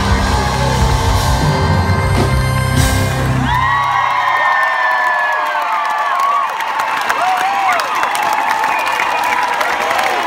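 A live band finishing a song, its heavy bass stopping about four seconds in, and then the concert crowd cheering, whooping and screaming.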